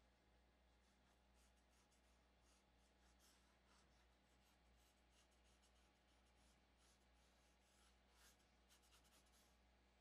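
Faint pencil strokes scratching on drawing paper, a run of short irregular strokes, a little louder near the end.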